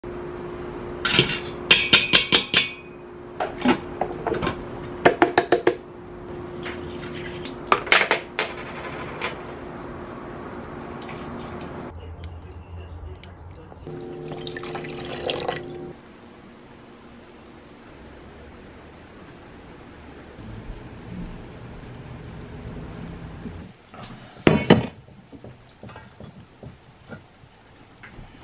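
Kitchen cooking sounds around stainless steel pots: clusters of sharp metal clinks and clatters of utensils against the pots, and broth being ladled and poured. A steady low hum runs under the first half, and a last loud clatter comes near the end.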